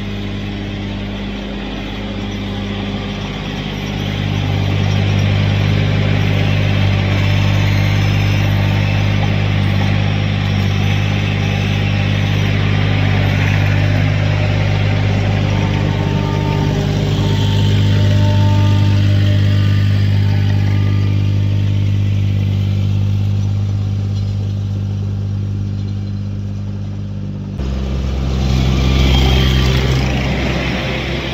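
Vermeer CTX mini skid steer's engine running steadily and loud, its note rising about four seconds in and dropping abruptly to a lower note near the end.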